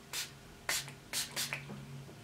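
Fine-mist pump spray bottle of Makeup Revolution Glow Revolution Prime Set Glow setting spray being sprayed onto the face: four short hissing puffs in quick succession over about a second and a half.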